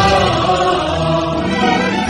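Music with a choir singing held, sustained chords.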